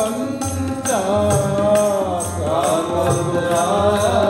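Sikh kirtan: a male voice sings a Gurbani hymn in long, sliding, ornamented lines over sustained harmonium chords, with a steady tabla beat of about two strokes a second.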